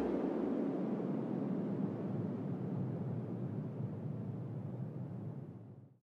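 The closing tail of a dubstep track: a low, noisy rumble left after the last beat, with no rhythm, slowly fading away and dying out just before the end.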